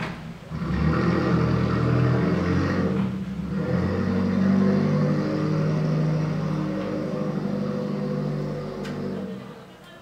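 An engine running steadily with its pitch shifting slightly, swelling up about half a second in and fading away near the end.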